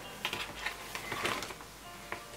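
Faint rustling and small taps of paper pages and a thin clear plastic dashboard sheet being handled in a notebook.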